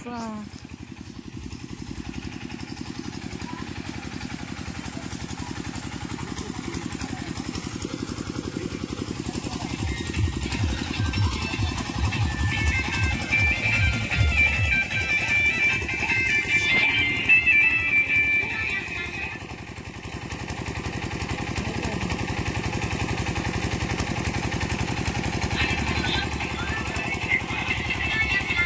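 Small portable generator engine running with a fast, steady chug, heavier from about ten seconds in until near twenty seconds. Music and voices are mixed in over it.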